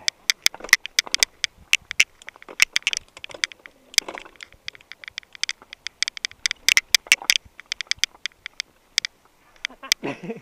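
Mountain bike on a steep, stony dirt trail: a dense, irregular run of sharp clicks and crunches as tyres and shoes go over loose stones and the bike rattles.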